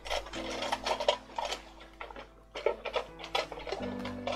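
Rummaging among craft tools and supplies in search of a pair of scissors: a run of irregular clicks, knocks and rattles as things are moved about.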